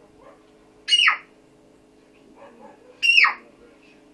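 Two short, loud animal cries about two seconds apart, each falling sharply in pitch, over a faint steady hum.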